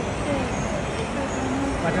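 Steady traffic and crowd noise: a dense hum of vehicles with indistinct voices murmuring underneath.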